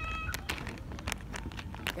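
A baby's high-pitched squeal, held on one steady note, cutting off just after the start, followed by a few light clicks of handling.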